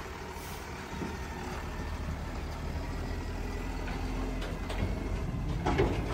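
Diesel engine of a Tata Prima 5530 tractor-trailer running as the truck drives slowly past with its tipper semi-trailer, a steady low rumble that grows gradually louder.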